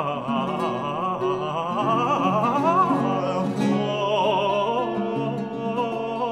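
Early Baroque Italian song: a tenor voice sings a wordless ornamented run with wavering pitch, then holds steadier notes in the second half, over a plucked-string continuo accompaniment.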